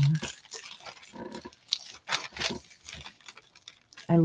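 Hands rubbing and pressing butcher paper down onto a paint-covered gel plate: soft, irregular paper rubbing and rustling, with a few louder strokes around the middle.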